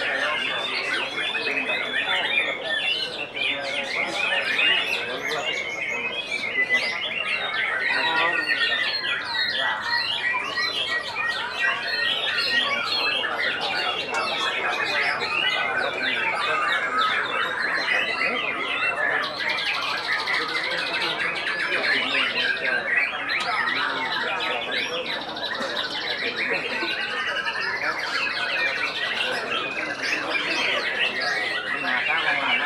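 White-rumped shamas (murai batu) singing continuously, several birds' fast, varied songs overlapping into a dense chorus of whistles, trills and harsh notes.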